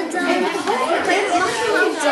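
Several children talking over one another: overlapping classroom chatter.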